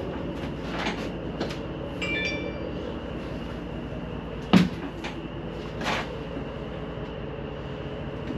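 Knocks and clunks inside an enclosed cargo trailer over a steady low hum, the sharpest knock about four and a half seconds in and a softer one near six seconds.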